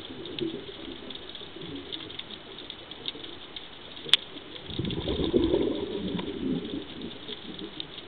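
Scuba regulator exhaust bubbles rumbling underwater as a diver breathes out, swelling about halfway through and fading after a second or two. A scattered crackle of faint clicks runs throughout, with one sharp click about four seconds in.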